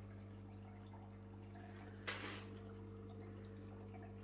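Small aquarium air pump humming steadily and faintly, with water trickling and bubbling in the tank; a brief soft hiss about two seconds in.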